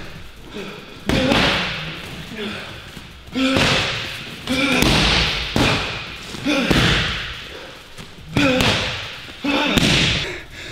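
Gloved punches and kicks landing hard on Muay Thai pads and focus mitts, six heavy irregular thuds, each with a forceful voiced exhale from the fighter.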